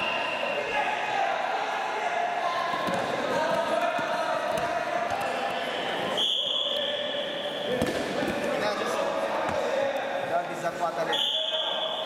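Freestyle wrestling bout in a sports hall: voices of coaches and spectators calling out throughout, dull thuds of the wrestlers' bodies on the mat, and two short, high whistle blasts, one about six seconds in and one near the end.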